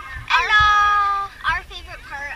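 A girl's voice: a high, drawn-out call that slides up and holds for about a second, then a few short, quick syllables.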